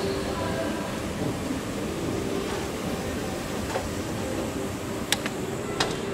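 O&K escalator running with a steady low rumble amid shopping-centre hubbub with faint voices. Two sharp clicks come near the end.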